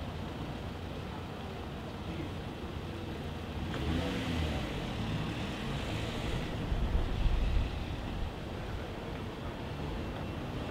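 Street traffic noise, with a motor vehicle passing in the middle, its engine rising and falling in pitch and loudest about seven seconds in.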